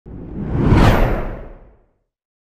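Whoosh sound effect of a TV channel's logo intro: a single swell of rushing noise that peaks about a second in, its hiss sweeping upward, then fades away.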